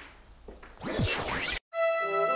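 A whoosh transition sound effect about a second in, with gliding pitch, cutting off suddenly. Background music with held, layered tones then starts near the end.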